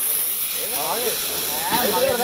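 Air hissing steadily out of a lorry's tyre valve as the tyre is being deflated.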